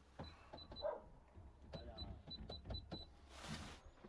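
Key-press beeps from an electronic till keypad: about ten short, high, identical beeps, a few spaced out and then a quick run in the second half, as an order is rung up. A brief rustle comes near the end.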